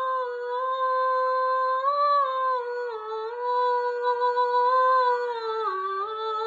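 A girl singing solo, holding long notes that step down gently in pitch, with one drop about three seconds in and another near the end.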